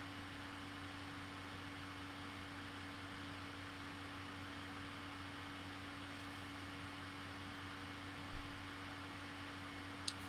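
Faint, steady room tone: an even hiss with a low hum and a steady humming tone, and no other event.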